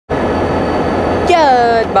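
A GEXR diesel locomotive's engine idling close by, a steady loud drone, with a man starting to speak over it near the end.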